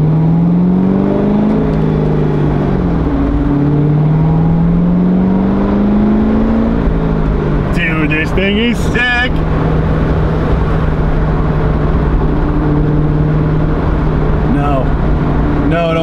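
C6 Corvette Z06's 7.0-litre LS7 V8 heard from inside the cabin under hard acceleration. The revs climb, drop back, climb again, then hold steady at cruise.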